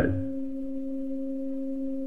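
A steady low hum: one held tone with a fainter overtone an octave above it, unchanging in pitch and level.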